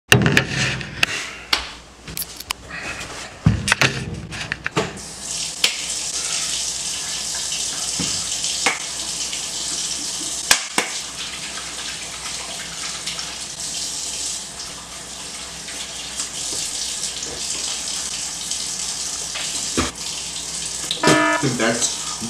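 Kitchen faucet running steadily into a sink while hands wash under the stream. A few sharp knocks and handling clicks come in the first few seconds, and a voice cries out just before the end.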